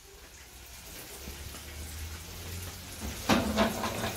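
Tofu deep-frying in hot oil in a small pan, sizzling and growing steadily louder.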